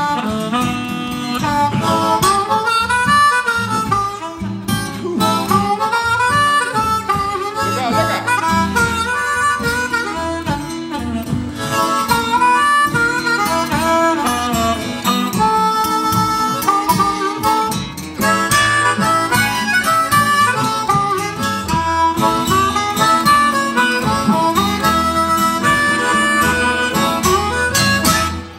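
Blues harmonica solo over acoustic guitar, the harmonica bending and sliding between notes, in a live recording.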